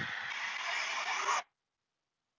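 Rushing wind from a small handheld fan on its highest setting, with background road noise, heard through the Sony WH-CH520's Bluetooth call microphone; the noise cuts off suddenly about 1.4 s in, leaving silence.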